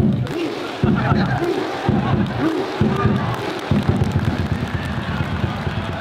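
Large football crowd chanting and shouting together in the stands, in a rhythm of roughly one shout a second.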